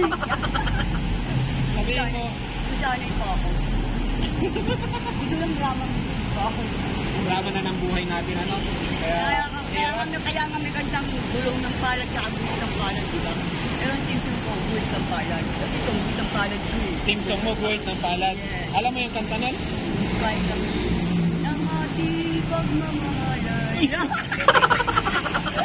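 Steady road traffic of cars, motorcycles and trucks, a continuous low rumble with a heavier rumble in the first few seconds, under a woman's conversational speech.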